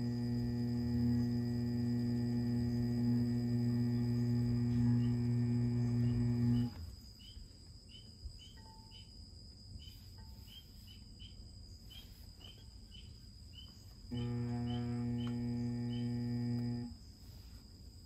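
Electric pottery wheel motor humming steadily while it spins a clay sphere for trimming. It switches off about a third of the way in, runs again for a few seconds, then stops near the end. Faint high chirps repeat about twice a second in the quiet stretches.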